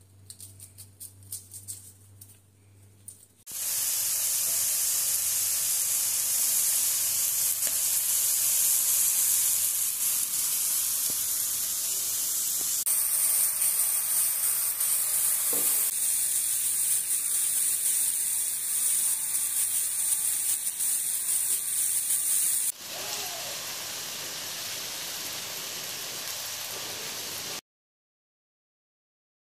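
Chicken and green-onion yakitori skewers sizzling in a frying pan: a loud, steady hiss that starts suddenly a few seconds in, after a few faint clicks of skewering. It drops a little in level about two-thirds through and stops abruptly just before the end.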